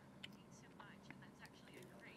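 Near silence, with faint, distant speech underneath.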